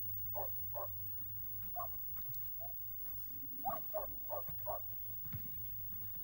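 A dog barking in short single barks: two close together at the start, one or two more a second or so later, then a quick run of four about three and a half seconds in, over a steady low hum.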